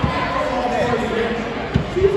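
Many people chattering at once in a school gym, with two dull thumps on the floor, one right at the start and one near the end, such as a ball bouncing on the court.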